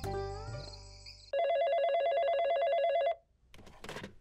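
A music sting fades out, then a telephone rings once with a warbling electronic trill for about two seconds and cuts off abruptly.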